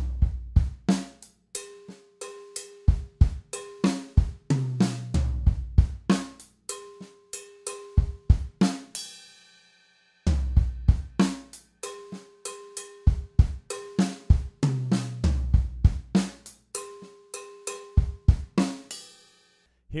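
Drum kit playing a slow funk groove of cowbell, toms, kick and snare. About nine seconds in a cymbal is left ringing, there is a short break, and then the same pattern is played again.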